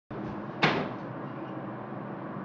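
A single sharp knock about half a second in, dying away quickly, over steady room noise.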